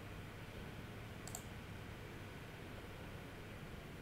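Quiet room tone with a low steady hum, and one soft computer mouse click about a second in.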